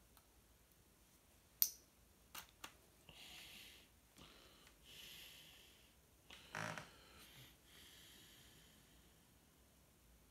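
Very faint, mostly quiet room with a few soft breaths and small handling noises: a sharp click a little over a second in, two lighter clicks soon after, and a brief louder rustle past the middle.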